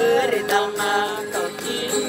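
Classical nylon-string guitar being strummed in a steady rhythm, playing the song's accompaniment between sung lines.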